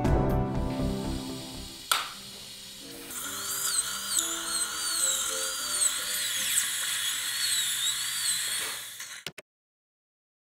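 High-speed dental handpiece whining as its bur cuts through a tooth to section it for extraction, the pitch wavering up and down; it stops abruptly near the end. Music fades out in the first two seconds, and there is a sharp click just before the drilling starts.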